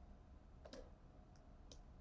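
Near silence broken by three faint, short clicks: the loudest about two-thirds of a second in, then two weaker ones close together in the second half.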